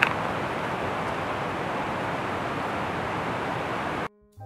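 Steady, even rushing noise with no distinct events, with one brief click right at the start.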